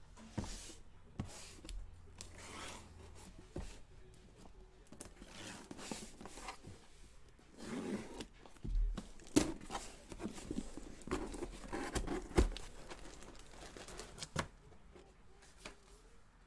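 A small cardboard box being torn open by hand: tearing of tape and cardboard and rustling, crinkling packaging, with a couple of sharp knocks about nine and twelve seconds in.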